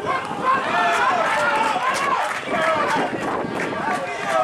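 Several men's voices shouting on a football pitch during play in front of the goal.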